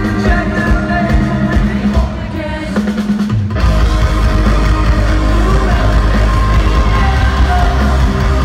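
Rock band playing live in an arena: drums, bass, guitars and sung vocals, loud. About two seconds in the music thins out briefly, then at about three and a half seconds the full band comes back in with a heavy bass.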